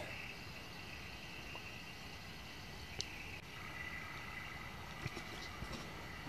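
Quiet forest ambience: a faint, steady, high-pitched insect trill, with a single small click about three seconds in.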